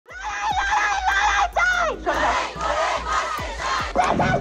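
A crowd of protesters, mostly women's voices, shouting together in loud, drawn-out cries that overlap, breaking off briefly between shouts.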